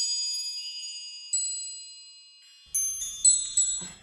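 Sampled wind chime ensemble, the slowly played 'Starry Night' articulation: a few separate high, bright ringing notes that fade away, one about a second in, then a small cluster of strikes near the end.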